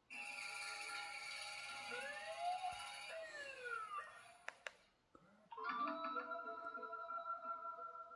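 Music from a television's speakers, with pitches that slide up and down about two to four seconds in. It cuts off after about four and a half seconds with two sharp clicks and a short lull, then different music with steady held notes begins as the channel changes.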